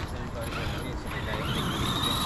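Electric motor of a large RC car whining, rising gently in pitch as it speeds up; the whine starts a little past halfway.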